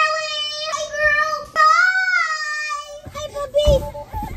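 A girl's voice singing unaccompanied, holding long high notes whose pitch bends up and down. About three seconds in, the singing turns choppy and there is a low thump.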